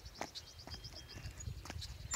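Faint thuds of a child's sneakers landing on an asphalt driveway while doing jumping jacks, about two landings a second.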